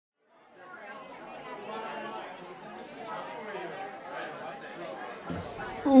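Background chatter of many voices in a bar, fading in from silence. Near the end it grows louder and one voice starts speaking clearly.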